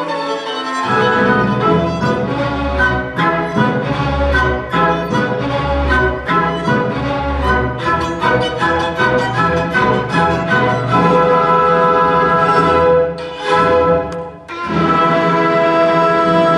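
Solo violin playing with a string orchestra and double bass in a live performance, with long held notes in the second half. There is a short drop just after 14 seconds, then a long sustained chord that closes the piece.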